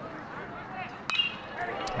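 Faint ballpark crowd chatter, then about a second in a single sharp bat ping as the batter fouls a pitch off.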